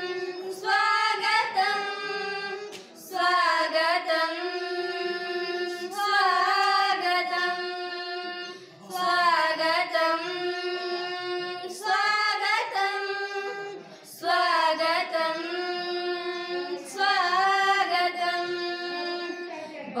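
Girls singing a welcome song in Odia together, unaccompanied, in long held melodic phrases with short breaks for breath.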